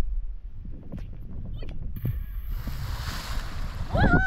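A person plunging into river water: a splash about two seconds in, then a second and a half of spraying, churning water. Wind buffets the microphone throughout.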